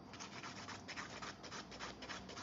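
A 100-grit hand nail file scraping across a cured gel nail in quick back-and-forth strokes, about four to five a second, levelling the gel surface.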